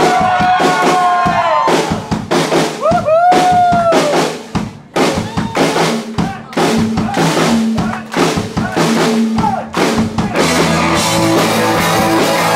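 Scattered drum kit hits and fills, with high gliding tones over them in the first few seconds. About ten seconds in, the full rock band of electric guitar, bass and drums starts into the song.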